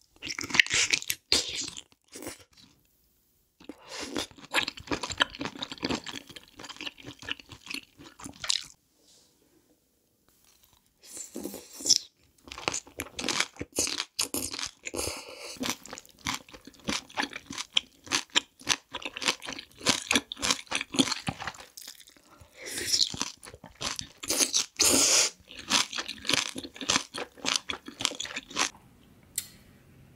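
Close-miked eating sounds: wet chewing and crunching of a mouthful of spicy boiled seafood such as octopus and shellfish. It comes in dense runs of sharp clicks and crackles, with short quiet pauses about two seconds and about nine seconds in.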